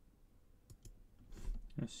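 Computer mouse clicks: two sharp clicks close together a little past the middle, then a brief rustle, with a spoken word starting right at the end.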